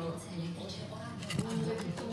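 Indistinct voices talking in the background, with light handling noise.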